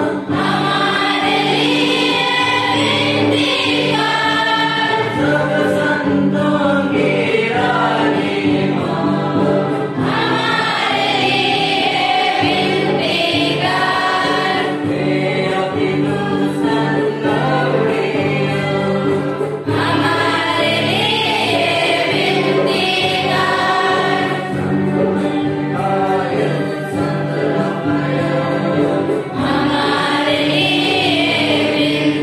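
Church choir singing a hymn, with steady held low notes beneath the melody and a change of phrase about every ten seconds.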